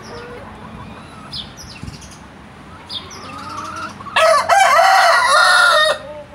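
A rooster crowing once: a loud call of about two seconds that wavers in pitch, starting about two-thirds of the way in.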